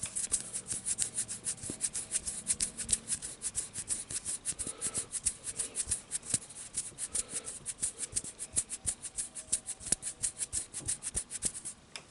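Fingertips rubbing and scratching right at the microphone: a fast run of short, crisp scratchy strokes, several a second, stopping just before the end.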